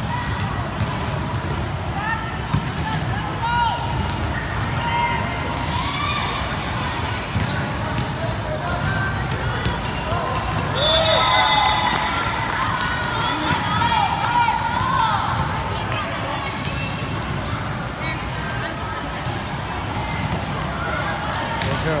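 Volleyball being struck back and forth on an indoor court, the hits heard as short thuds among the overlapping shouts and chatter of players and spectators in the hall.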